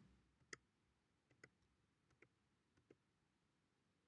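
Near silence, with four faint, short clicks spread over a few seconds, the first the strongest.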